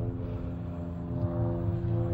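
A steady low hum with several evenly spaced overtones, unchanging throughout.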